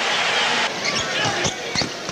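Court sounds of a basketball game: a broad crowd noise that drops away less than a second in, then sneakers squeaking on the hardwood floor and the ball thudding a few times.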